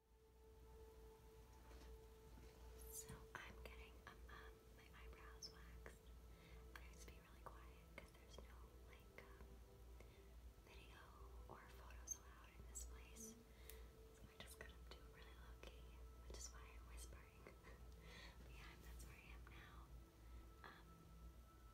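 Near silence: a faint, indistinct voice over a low steady hum.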